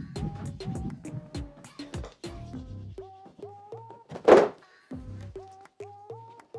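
Background music with a steady plucked beat. About four seconds in, one loud thunk as a large sheet of Formica laminate is laid down onto the worktop.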